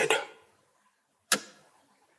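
A spoken word trailing off, then silence broken once by a single short, sharp click.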